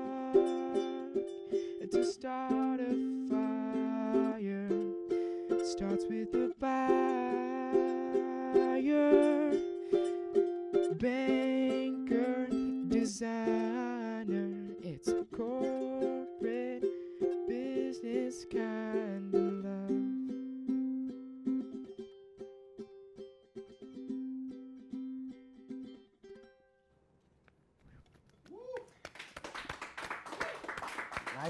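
Ukulele strummed in a steady rhythm with a man singing long held notes over it. About twenty seconds in the voice stops and the ukulele plays on more softly, dying away a few seconds later as the song ends. Clapping starts just before the end.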